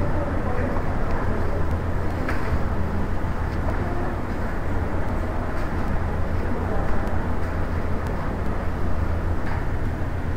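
Steady low background noise with a constant low hum, even throughout and without distinct events.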